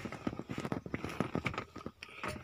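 A quick, irregular run of light clicks and knocks, several a second, from hand and phone handling among the bare steering column and dashboard frame.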